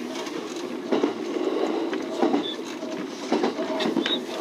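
Local electric train running, heard from inside the driver's cab: a steady rumble of wheels on rail, with a few sharp clicks as the wheels pass over rail joints and points on the approach to a station.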